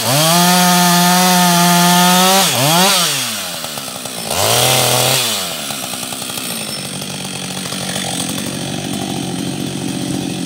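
Husqvarna 562 XP two-stroke chainsaw at full throttle, holding a steady high pitch as it cuts through a firewood log for about two and a half seconds. The revs then drop, the engine gets a short blip of throttle, and from about halfway on it settles into a steady idle.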